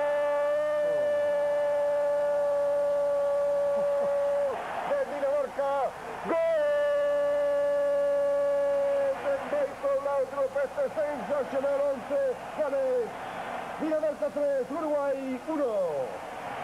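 Spanish-language TV football commentator's long drawn-out goal cry, a shout held on one high note for about four and a half seconds, then after a quick breath held again for about three seconds, followed by rapid excited shouting.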